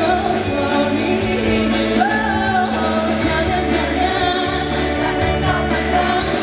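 A woman singing a pop song live into a handheld microphone, her melody gliding between notes, over instrumental backing with steady bass notes.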